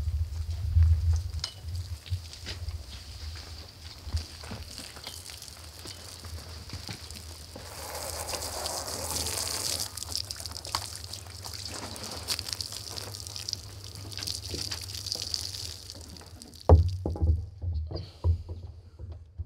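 Water from a garden hose splashing onto wetsuits on a wooden deck, a rushing spray that is loudest for a couple of seconds in the middle. Scattered knocks and a few louder thumps near the start and near the end.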